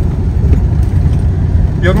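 Steady low rumble of a semi truck's engine and road noise, heard inside the cab while driving.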